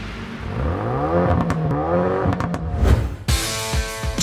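A car engine revving and accelerating, its pitch rising in several sweeps. About three seconds in it gives way abruptly to music.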